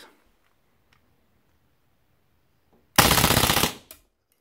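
WE Mauser M712 gas blowback airsoft pistol firing one full-auto burst of 11 rounds about three seconds in, a rapid rattle of shots lasting under a second. The burst stops when the magazine runs empty and the bolt locks back.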